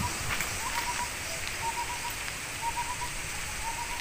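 Outdoor ambience: a steady noisy hiss with low rumbling on the microphone, and a bird's short notes repeating several times in the background.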